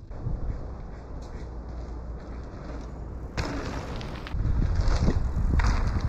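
Hardtail mountain bike rolling fast over a hard-pack trail: tyre roar and wind buffeting a chest-mounted action camera's microphone, with a short noisy surge a little past halfway and louder rumbling over the last couple of seconds as the bike runs through the rollers.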